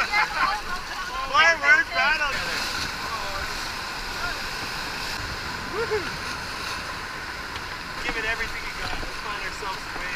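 Steady rushing of river rapids around a whitewater raft, with people shouting and whooping over it about a second in and briefly again later.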